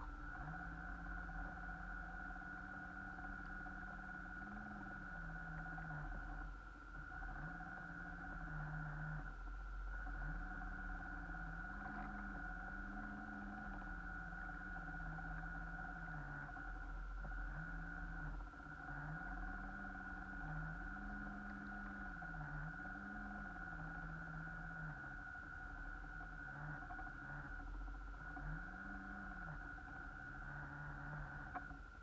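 RC boat's motor running, its low hum stepping and arching up and down in pitch again and again, under a steady high whine.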